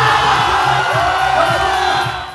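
A hip-hop beat playing while the crowd cheers and whoops loudly over it.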